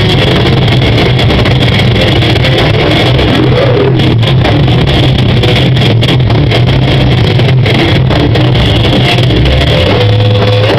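Live metal band playing with distorted electric guitars, bass and drums. It is picked up by a small camera microphone that overloads, so it comes through as a dense, steady, distorted wall of sound.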